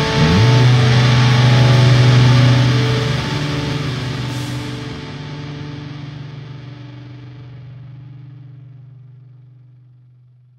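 The final chord of a pop-punk song on distorted electric guitars, struck just after the start and left to ring out. It fades slowly to silence, the bright top end dying away first and the low notes last.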